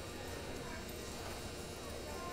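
Steady indoor arena ambience: a low murmur of faint, distant voices with animal sounds from the livestock in the arena.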